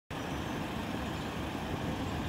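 Steady low outdoor rumble, like background traffic or wind noise, with no distinct events.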